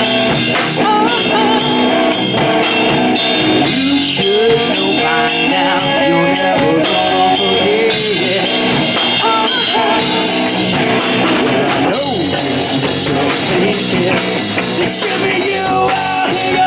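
Live rock band playing loudly: drum kit with regular cymbal strokes under electric guitars.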